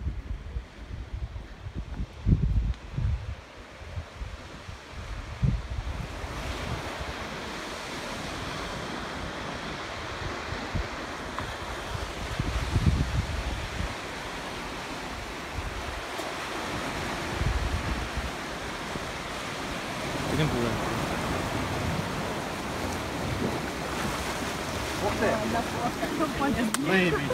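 Wind gusting on the microphone, with the steady wash of sea surf breaking over shoreline rocks taking over after about six seconds.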